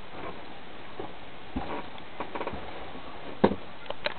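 Handling noise: a few knocks and clicks, the loudest about three and a half seconds in, over a steady hiss, as the PVC launcher and camera are moved about.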